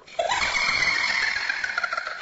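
A sudden loud, high-pitched screech that starts a fraction of a second in with a short upward slide, then holds steady.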